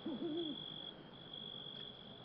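A faint, steady high-pitched whine under quiet room tone, with a short low murmur from a man's voice near the start.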